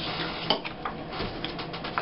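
Paper and a photo print being handled and pressed onto a glued scrapbook page on a tabletop: light rustling with scattered small taps and clicks, one sharper click about half a second in.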